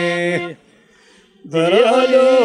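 Albanian folk epic song: a long held note with a rich, steady tone ends with a downward fall about half a second in, then after a pause of about a second the music resumes on a rising, wavering note.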